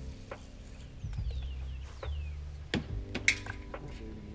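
Baitcasting reel being slowly cranked, a faint whirr with a few soft, sharp clicks from the reel and handle.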